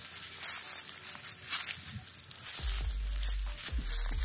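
Footsteps crunching on dry leaves and pavement, about one step a second, with a rustling hiss between steps. A steady low hum comes in about two and a half seconds in.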